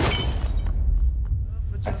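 Glass shattering: one sharp smash right at the start, with the shards trailing off over about half a second. A steady low rumble runs underneath.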